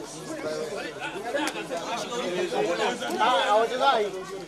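A crowd of people talking at once: overlapping chatter of many voices, with no single speaker standing out, a little louder near the end.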